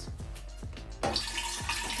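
Juice mixture poured from a copper cocktail shaker into a glass pitcher, the liquid starting to run about a second in, with background music.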